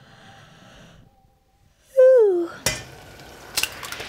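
A loud, short falling tone about two seconds in. Then, from near the end, a stainless steel saucepan on a stovetop: a utensil clinking against the pan and a steady hiss as noodles are stirred in it.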